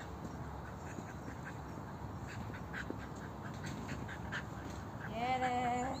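Faint ticking, then near the end a single drawn-out vocal call of about a second, steady in pitch and voice-like, most likely the handler calling to or praising her dog.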